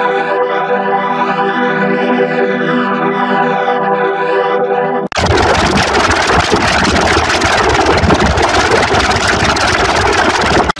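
Heavily effects-processed audio. First a stack of steady held tones with a repeating sweep in the upper range, like a flanger. About halfway through it cuts off abruptly into a dense, loud, distorted wash of noise.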